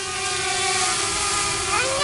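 DJI Mavic Air quadcopter hovering, its propellers giving a steady whine over a rushing hiss.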